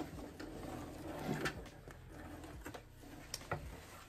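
Brother electric sewing machine running, stitching through denim, then stopping. A few short clicks and handling near the end as the fabric is pulled free.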